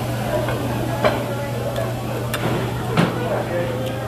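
Restaurant ambience: indistinct background chatter over a steady low hum, with a few sharp clicks, the loudest about one second and three seconds in.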